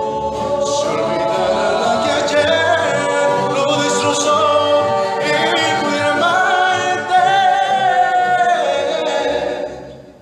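A rondalla's mixed voices singing in harmony, the voices carrying the sound. Near the end the phrase ends and the sound dies away.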